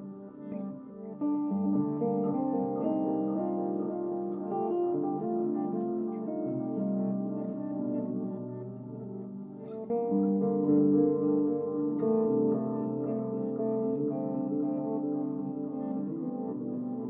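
Live small-group jazz: a semi-hollow electric guitar plays sustained melodic lines over double bass, with long held notes that dip briefly about two-thirds through and then swell again.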